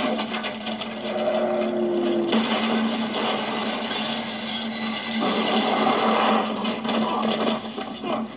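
Film sound effects of a heavy vehicle crashing and tumbling down a rocky slope, with rock and debris clattering in a continuous dense rumble and a steady low hum underneath. It is heard played through a TV's speakers and picked up by a phone in the room.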